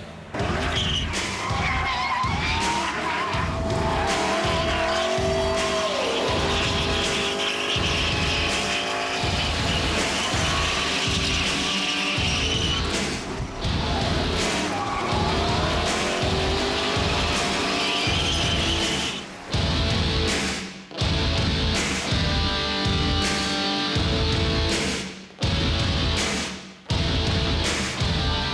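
Pontiac GTO drift car sliding sideways: the engine revs rise and fall and the tyres squeal. Background music with a steady beat runs underneath.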